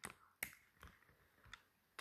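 Near silence: quiet room tone with three short, faint clicks spread across the pause.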